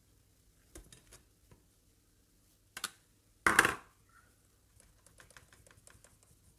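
A metal mesh flour sieve being handled and tapped over a glass mixing bowl: scattered light ticks, one louder knock about three and a half seconds in, and a quick run of faint taps near the end as the sieve is shaken to work the flour through.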